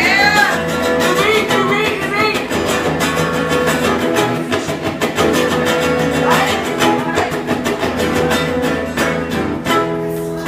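Guitar strummed live in a steady rhythm, carrying the beat between rap verses.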